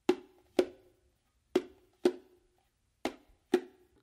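Bongos played with the palm-finger movement: three pairs of hand strokes about a second apart, the two strokes of each pair half a second apart, each stroke ringing briefly.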